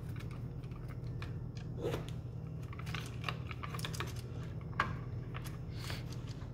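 Light, irregular clicks and scrapes of a screwdriver and copper wire against an electrical receptacle's screw terminals as the wires are fastened, over a steady low hum.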